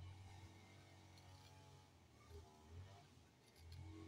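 Near silence with a faint steady low hum.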